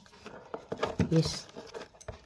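Stack of paper message slips rustling with small sharp clicks as a hand leafs through them, with one short spoken word about a second in.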